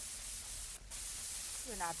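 Steady hiss and low hum of an old radio broadcast recording in a pause between lines, with a momentary dropout a little under a second in. A voice begins just before the end.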